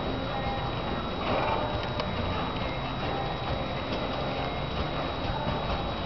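Hoofbeats of a ridden American Quarter Horse moving at a slow gait on soft indoor-arena footing, over a steady background hiss and a constant faint high whine.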